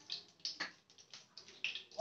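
Cooking oil heating in a nonstick kadai on a gas burner, giving faint, irregular small crackles and ticks, about half a dozen in two seconds.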